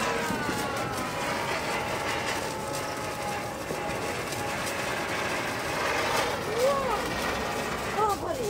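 Ground fountain firework (anar) burning on the road with a steady spraying hiss as it throws out sparks.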